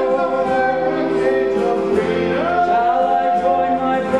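Stage musical cast singing together in chorus, the voices sliding up to a long held note about halfway through.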